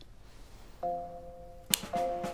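A soft, steady musical note begins about a second in. Near the end comes a single sharp click from a hanging pendant light switch on a twisted flex being grabbed.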